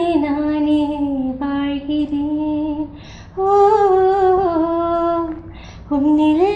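A young woman singing solo and unaccompanied, holding long sustained notes that glide between pitches. There are two phrases, with a short breath between them about halfway through.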